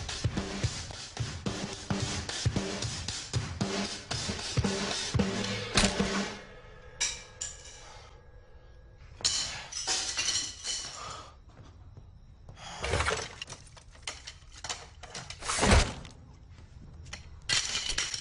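A drum kit played rapidly for about six seconds, then it stops. A series of separate crashes and clatters with pauses between them follows, and near the end a metal tool-chest drawer rattles.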